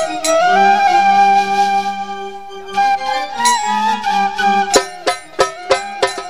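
Instrumental passage of Bengali folk music: a flute plays a gliding, held melody over sustained lower notes. Sharp percussion strikes come in near the end.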